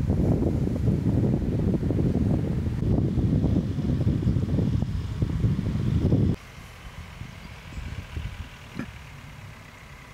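Wind buffeting the microphone outdoors, a loud irregular low rumble, cut off abruptly about six seconds in by a shot change, leaving a much quieter background.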